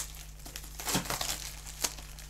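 Clear plastic cellophane wrapping on a pack of cards and envelopes crinkling as it is handled, in scattered soft crackles with two sharper clicks, about a second in and near the end.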